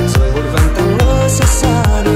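Vinahouse dance music: a steady four-on-the-floor kick drum at about 142 beats a minute, a bass pulsing between the kicks and a melodic lead over it.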